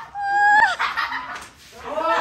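A person's high-pitched whining cry held for about half a second and breaking downward at its end, followed near the end by the voice starting up again.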